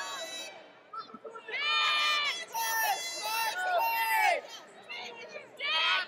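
People watching a wrestling bout shouting: several loud, high-pitched yells, each lasting about half a second to a second, with short lulls between them.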